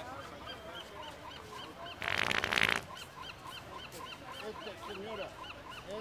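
A prank fart sound: one loud burst lasting just under a second, about two seconds in. Behind it, small high chirps repeat at about four a second.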